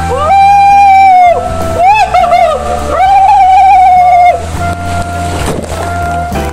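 A man yelling in long, high-pitched wails and short rising-and-falling yelps while riding down an enclosed tube water slide, over a steady low rush of water. The yelling stops about four seconds in.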